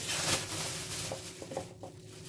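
Thin plastic bag crinkling and rustling as fresh green peppers are pushed into it by hand, fading out in the second half.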